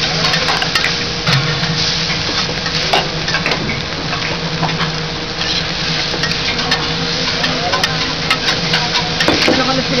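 Fried rice sizzling on a steel hibachi griddle as it is stirred and chopped with metal spatulas, with frequent sharp clicks and scrapes of the spatulas on the griddle.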